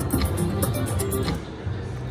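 Three-reel Triple Double Diamond Wheel of Fortune slot machine spinning, with a rapid run of ticks from the reels over casino background music. The ticks stop and the sound drops about a second and a half in as the reels settle on a losing spin.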